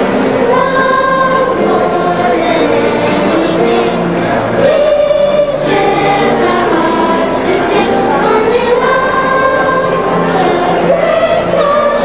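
Children's choir of upper-elementary students singing together, holding notes of about a second each as the melody steps up and down.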